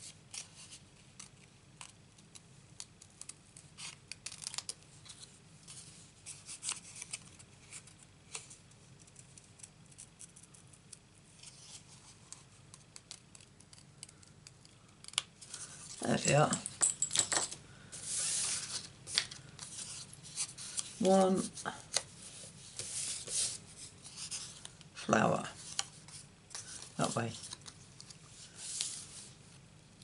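Craft scissors snipping around a stamped cardstock flower in many small, quick cuts. From about halfway there are louder rustles and knocks as the scissors are set down and the cut flower and paper scraps are handled.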